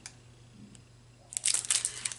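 Small clear plastic bag crinkling as it is handled, starting about two-thirds of the way in and running in quick crackles, after a quiet stretch with a faint click.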